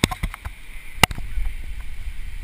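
Several sharp knocks and clicks, the loudest about a second in, over a steady low rush of whitewater.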